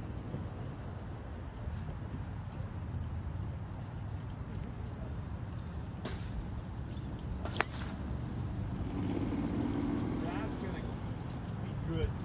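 One sharp crack of a golf driver striking the ball, about seven and a half seconds in, over a steady low outdoor rumble.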